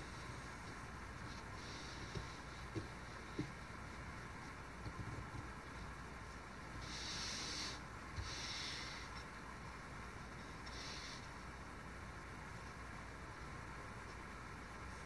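Chip carving knife working in wood: a few light clicks and several short, scratchy slicing strokes over a steady low background hiss.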